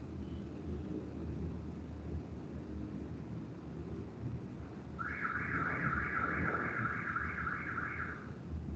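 A high, rapidly pulsing electronic alarm tone, about six pulses a second, starts a little past halfway and lasts about three seconds. It sits over a low rumbling background from an open microphone.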